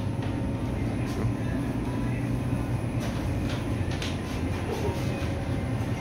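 Steady low hum and rumble of supermarket background noise, with faint voices in the distance.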